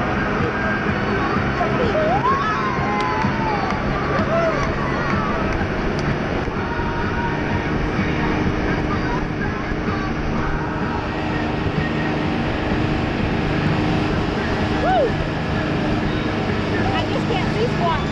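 Jet boat's engines running steadily at speed, with rushing wind and water noise and passengers shouting over it now and then.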